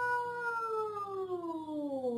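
A woman's long drawn-out 'goool' shout imitating a football commentator's goal call: one held note that falls in pitch over the last second.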